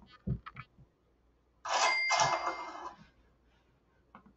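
A cash-register "ka-ching" sound effect, about a second long, starting just past the middle, after a few faint clicks. It signals that reward money has been added to a student's account.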